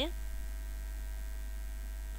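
Steady low electrical hum, like mains hum picked up by the recording, with a few faint steady tones above it and no other sound.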